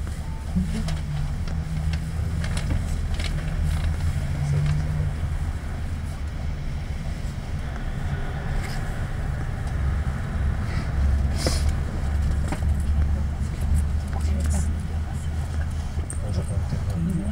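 Diesel engine of a 1999 Isuzu Cubic KC-LV380N city bus idling while the bus stands still, a steady low drone heard from inside the passenger cabin.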